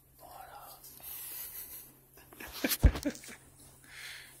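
A man's voice murmuring or whispering too softly for words to be made out, then a short cluster of knocks and rustles near the end, the loudest sound here.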